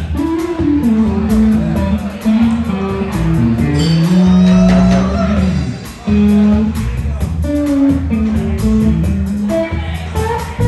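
Live blues band playing: an electric guitar lead with bent, sliding notes over bass and drums, holding one long note about halfway through.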